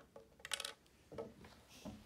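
Small plastic toy-car wheels clinking against each other and a hard tabletop: one sharp, ringing clink about half a second in, then quieter handling.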